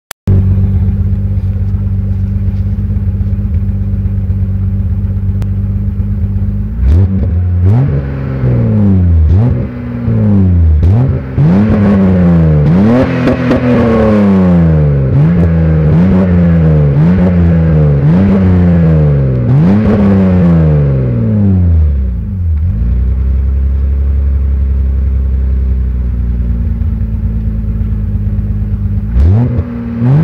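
BMW E30 M20B27 2.7-litre straight-six 'eta' engine heard at the tailpipes of its Supersport exhaust with twin 76 mm tips. It idles steadily for several seconds, then is blipped again and again in quick revs for about fifteen seconds, settles back to idle, and starts another rev near the end.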